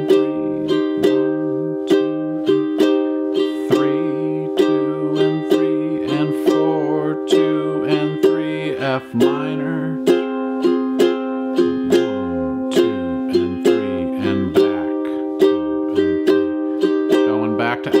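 Ukulele strummed in a steady down-down-up-down-up pattern, playing a C minor chord, switching to F minor about halfway through and back to C minor near the end.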